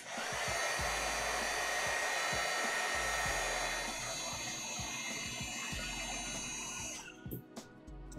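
Heat gun blowing hot air steadily with a faint whine, shrinking heat-shrink tubing over soldered connector contacts. It switches off about seven seconds in.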